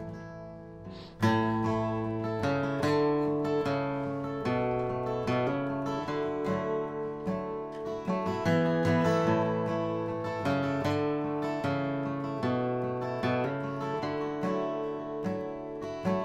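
Steel-string acoustic guitar played with a pick, picking and strumming a chord pattern as the instrumental introduction to a song. It starts softly and comes in fully about a second in.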